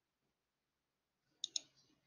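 Two quick clicks of a computer mouse button, close together, about a second and a half in; otherwise near silence.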